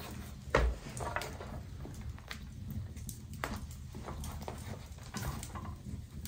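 Leather bags and small shooting gear being handled and gathered off a wooden bench: soft leather rustling with scattered light clicks and knocks, the loudest a dull thump about half a second in.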